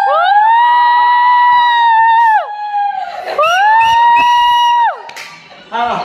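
A high-pitched voice holding two long notes, each sliding up at the start and dropping away at the end, the second shorter than the first, with a gap of about a second between them.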